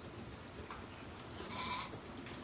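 Shetland sheep bleating: a short call about a second in, then one longer, louder bleat near the end.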